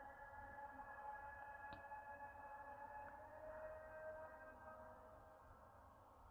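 Near silence: a faint steady hum of several tones, with a couple of faint ticks.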